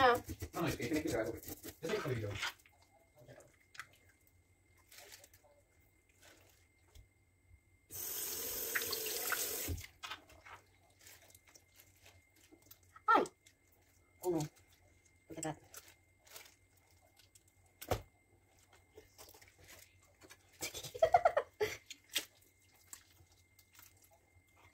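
Kitchen tap running into a sink for about two seconds, starting and stopping sharply, then a few short wet knocks and clicks of hands working inside a raw fish in the sink.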